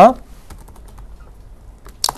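Faint, quick clicks of typing on a laptop keyboard: a run of keystrokes in the first second and a couple more near the end.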